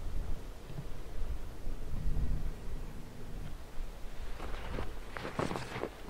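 Wind on the microphone: a low, uneven rumble over a steady hiss of breeze. Near the end, short soft rustling sounds begin.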